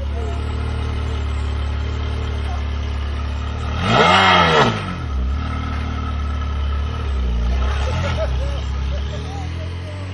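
Ferrari V8 engine idling, with one sharp throttle blip about four seconds in that climbs quickly in pitch and falls back, and two smaller blips a few seconds later.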